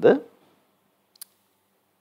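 A man's voice trails off, then a quiet pause broken by a single short, sharp click just past the middle.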